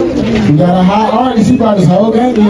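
A man's voice through a PA, in drawn-out, gliding vocal sounds with no backing beat.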